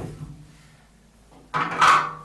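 A single knock as a spindle-sander sanding drum is set down on the floor, followed by faint handling sounds.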